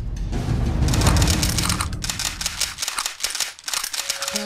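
The low rumble of a cartoon explosion dies away over the first two seconds. A rapid, irregular rattle of sharp clicks starts about a second in and keeps going to the end.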